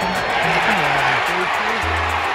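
Baseball stadium crowd cheering loudly as a hit is put in play, under a background music track with a plucked guitar line.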